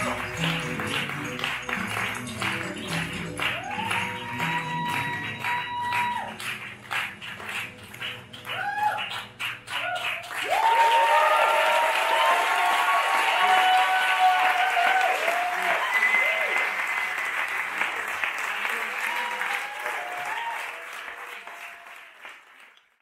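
Music with a beat and rhythmic strokes plays until about ten seconds in, then gives way to an audience applauding and cheering, which fades out at the end.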